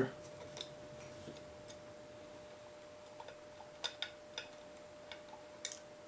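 Faint, scattered small clicks and ticks of a screwdriver and metal parts being worked on a carburetor's linkage and top screws during disassembly, with a sharper click near the end. A faint steady hum runs underneath.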